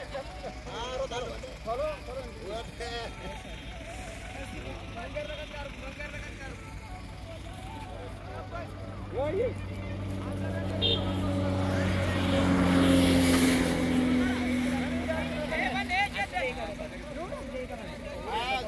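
A motor vehicle's engine drone passing by: a steady low hum that builds to its loudest about two-thirds of the way in, then fades. Voices talk in the background throughout.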